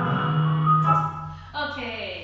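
Recording of a choir singing the soft, slow opening of a gospel song, played back and cut off about a second in. A woman starts speaking near the end.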